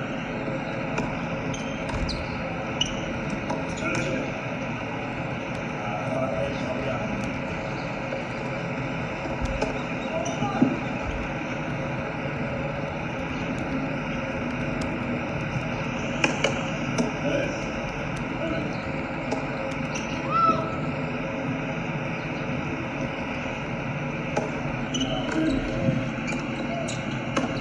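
Tennis ball bouncing on a hard court and being struck with rackets, heard as scattered sharp knocks over a steady background of distant voices and outdoor hum.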